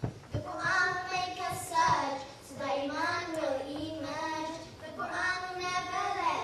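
Children singing an unaccompanied melody into microphones, with long held notes that rise and fall.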